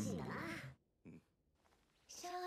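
An anime character's voice speaking a line in Japanese, ending under a second in. After a brief faint sound, near silence follows.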